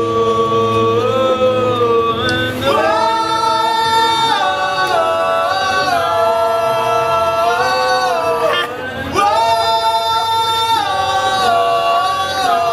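Live rock band playing, dominated by long sustained tones held for a few seconds each before sliding to new pitches. There is a brief drop in level about three-quarters of the way through.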